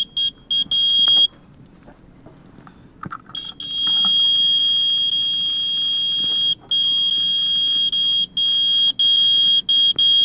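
Radex radiation meter sounding its high-pitched alarm tone: the uranium-ore Revigator jar has pushed the dose rate to about 1.24 µSv/h, well above the 0.23 background. Short beeps in the first second give way to a gap of about two seconds, then the tone comes back about three and a half seconds in and holds almost without a break.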